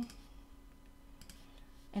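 A few faint clicks from working a computer's mouse and keys, over a faint low steady hum.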